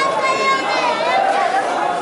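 A large crowd of many voices talking and calling out over one another, steady throughout.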